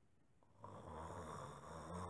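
A person snoring: one long, low snore that begins about half a second in and lasts about a second and a half.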